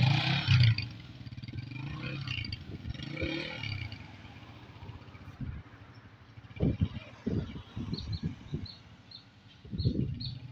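Small motorcycle's engine running as it pulls away, its sound fading over the first few seconds. A few short bird chirps near the end.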